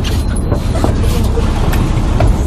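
Fishing boat's engine running with a steady low rumble.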